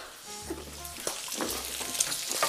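Diced bacon frying in a pan, a steady sizzle, with background music playing softly.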